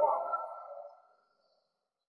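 A ringing, pitched tone dying away within the first second, then near silence.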